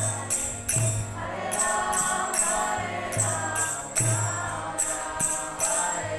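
Group devotional chant sung by many voices together, kept in time by jingling metal hand percussion striking about two or three times a second, over a pulsing bass note.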